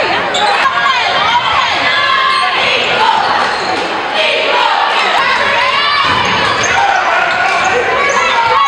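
Live sound of a high school basketball game in an echoing gym: players and spectators calling out over steady crowd chatter, with the ball bouncing and a few sharp ticks.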